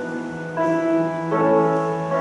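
Church organ playing slow held chords, the chord changing about half a second in and again a little after a second.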